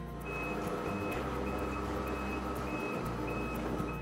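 Powered tender garage door of a Beneteau Gran Turismo 44 lifting open, its drive unit running with a steady hum while a warning beeper sounds at even intervals.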